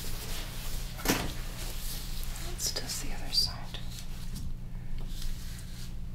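Gloved hands and fabric rustling and shifting as a knee is flexed and rotated on an exam couch, with a few short knocks, the sharpest about a second in, and a brief squeak midway, over a steady low hum.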